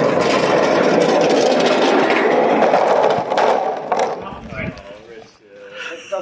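Two engine rocker covers on small wheels rolling down a long steel channel ramp: a loud, steady rumble of wheels on steel that dies away about four seconds in.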